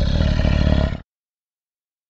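Tiger roar sound effect, deep and rumbling, cutting off suddenly about a second in.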